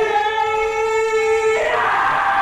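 A man's voice holding one long, steady, high falsetto note, like a sung soprano note, for about a second and a half: a wrestler's high-pitched cry after a low blow, the kind that "takes you up an octave". It breaks off near the end as crowd noise rises.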